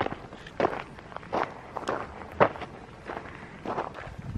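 A hiker's footsteps crunching on a gravel dirt road at a steady walking pace, about one and a half to two steps a second.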